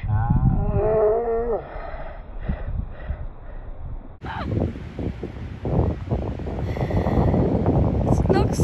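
A woman's drawn-out, wavering vocal exclamation, then from about halfway through, wind buffeting the microphone.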